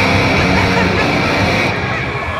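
Live heavy rock band with electric guitars, bass and drums kicking in abruptly and playing loudly.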